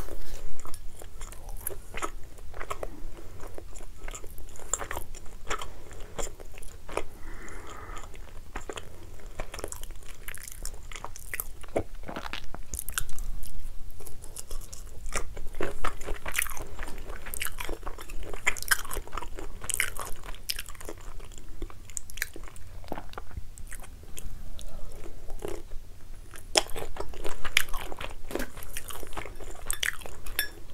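A person chewing soft ravioli close to the microphone, with many short, wet mouth clicks and smacks.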